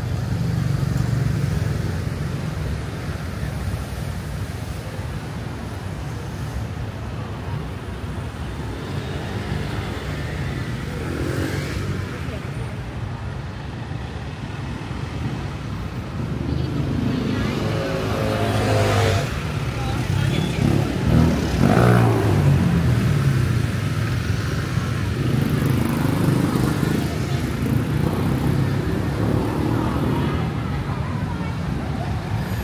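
City street traffic: a steady engine rumble, with cars and motorbikes passing close by. The loudest passes come about two-thirds of the way in, one with a rising engine note. Voices are heard in the background.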